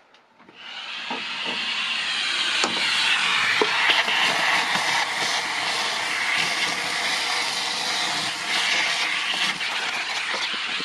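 A vacuum is switched on about half a second in and runs steadily with a loud hiss, its hose nozzle sucking up sawdust, with a few small clicks of chips rattling into it.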